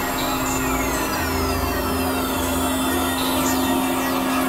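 Experimental synthesizer drone and noise: a steady low tone under a dense hiss, with rising and falling sweeps high up. A deep rumble swells in about a second in and drops out near three seconds.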